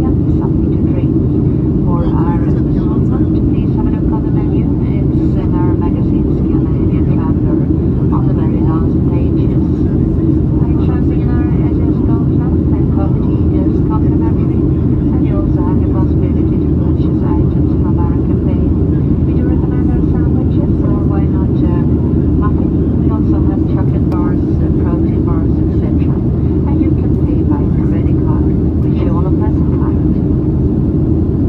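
Steady, loud cabin noise of a Boeing 737-700 in flight, its engine and airflow roar heard from a window seat over the wing. Faint people's voices carry on underneath throughout.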